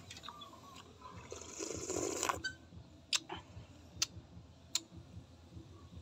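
Eating sounds from a man having soup: chewing, a noisy slurp about two seconds in, then a few sharp clicks, likely a metal spoon touching the metal bowl.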